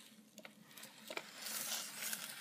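Soft handling noises: a few light clicks, then a faint rustle of plastic sheeting that grows a little louder near the end as the ceramic tile is turned on it.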